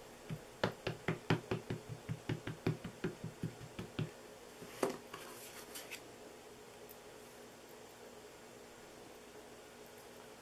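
Ink pad patted rapidly against a rubber stamp on a clear acrylic block to re-ink it: a run of light taps, about five a second for some four seconds. Then a single sharper knock, and cardstock sliding briefly on the desk.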